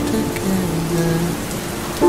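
A slow song with a voice holding one note that dips slightly about half a second in, over a steady sound of falling rain.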